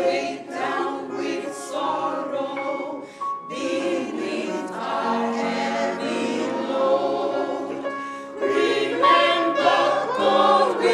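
Church choir of men and women singing a hymn together, many voices holding sung notes, growing louder near the end.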